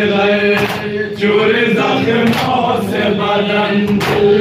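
Group of men chanting an Urdu noha (mourning lament) in unison through a microphone and PA, with sharp hand slaps of chest-beating (matam) now and then over the singing.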